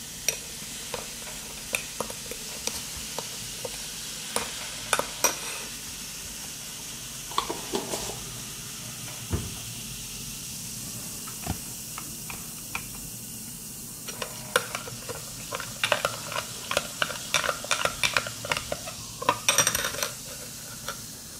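Baking soda fizzing in an acidic citric acid solution in a drinking glass: a steady hiss of bubbles as the acid and base react. A metal spoon clinks against the glass now and then, then stirs with rapid clinks over the last five seconds or so.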